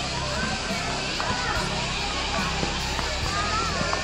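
Children playing and calling out at a busy playground, a hubbub of distant voices.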